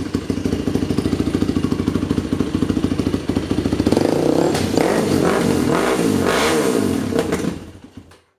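2008 Yamaha YFZ450 quad's single-cylinder four-stroke engine idling with an even pulse, then revved up and down several times on the thumb throttle from about four seconds in. It cuts out suddenly just before the end, typical of the bad bog off idle that makes it stall.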